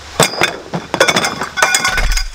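Metal camp-table support poles clinking against each other as they are handled: a string of sharp metallic clinks with a brief ringing note, coming thickest near the end.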